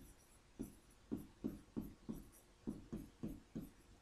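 Pen strokes on an interactive smartboard screen as words are handwritten: about ten faint, short, irregular scratches and taps.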